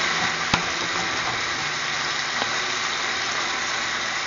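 Ground Italian sausage sizzling steadily in a skillet, with a sharp knock of the wooden spoon against the pan about half a second in.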